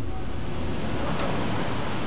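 A steady, even rushing noise with no distinct events or tones.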